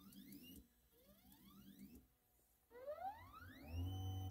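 Stepper motors of a Neoden YY1 pick-and-place machine whining faintly as the head jogs in a few short moves. On each move the pitch rises as the motor speeds up and then holds. The last move, starting near three seconds in, is the longest.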